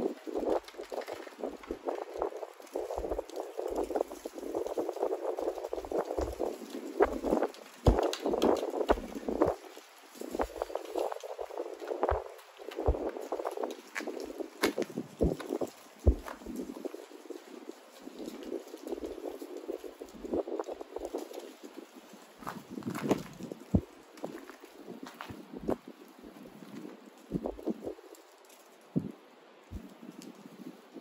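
Close handling noise of denim char cloth, a chert flake and a dry fibrous tinder bundle being worked in the hands: uneven rustling and crackling with many small sharp clicks.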